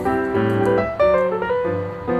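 Piano music, with notes and chords struck in quick succession and left to fade.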